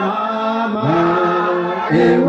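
A congregation singing a hymn together, unaccompanied, in long held notes, moving to a new note about a second in.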